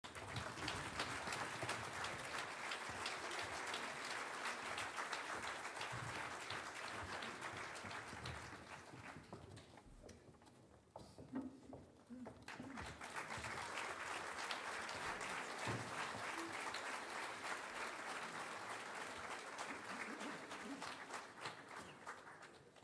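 Audience applauding in a hall, in two rounds: the clapping dies down about ten seconds in, a few voices are heard in the lull, and a second round of applause starts about a second or two later and fades near the end.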